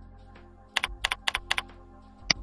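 Computer keyboard typing: a quick run of four keystrokes about a second in, over soft background music with steady held tones.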